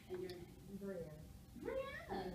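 A person speaking, the voice swinging in pitch and rising steeply near the end.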